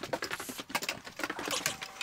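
Footsteps going down a staircase with a fast run of small clicks and rattles from handling as he moves.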